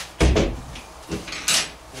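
Knocks from handling tools on a wooden cabinet frame and floor: a heavy thump shortly after the start as a cordless drill is set down, then a lighter knock and a brief scrape.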